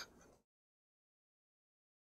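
Near silence: a faint trailing remnant of laughter fades out within the first half second, then the sound track goes completely silent.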